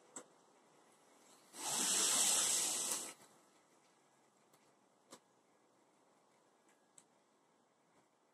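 A hiss lasting about a second and a half, the loudest sound here, with a few faint clicks before and after it.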